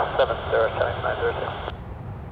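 Air traffic control radio voice, tinny and narrow, talking until it cuts off abruptly shortly before the end, over a steady low rumble.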